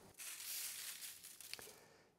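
Faint, soft patter of salt grains sprinkled by hand onto beetroots lying on aluminium foil, fading out after about a second, with one small tick about a second and a half in.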